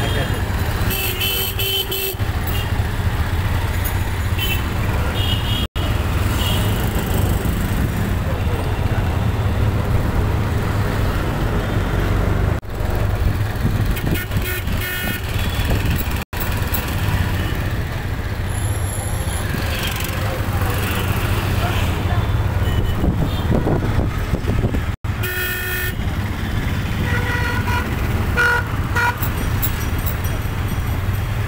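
Busy street traffic: a steady low engine rumble from CNG auto-rickshaws and other vehicles, with short horn toots sounding again and again.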